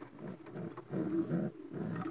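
Racing pigeons cooing: a string of low, repeated coos.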